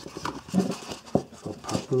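Small cardboard knife box being handled and closed by hand: a run of light cardboard scrapes and clicks as the flaps are folded and tucked in.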